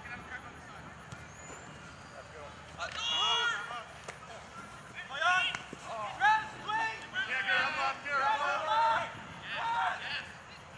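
Several people shouting during a rugby game: a string of loud, high-pitched calls in quick succession from about three seconds in, with only faint field noise before that.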